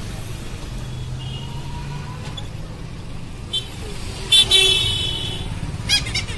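Steady low road rumble and street traffic heard from an open e-rickshaw on the move, with a vehicle horn honking loudly for about a second after about four seconds.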